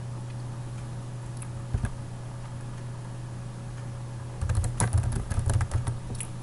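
Typing on a computer keyboard: a single key click a little under two seconds in, then a quick run of key clicks from about four and a half seconds in. A steady low hum runs underneath.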